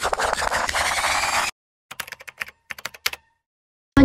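A loud noisy whoosh with a rising tone that cuts off suddenly about one and a half seconds in, then, after a brief silence, a quick run of light typing-like clicks.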